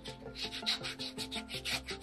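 Quick back-and-forth rubbing strokes of a hand tool on calfskin shoe leather, about six a second, over background music.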